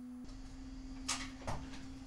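A faint steady low hum on one pitch, with two brief soft noises a little after one second in.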